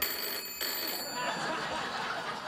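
Telephone bell ringing for an incoming call, a steady high ring that stops a little over a second in, followed by a murmur of studio audience noise.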